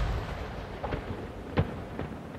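Fireworks: the low rumble of a burst dying away, with a few scattered pops, the loudest about one and a half seconds in.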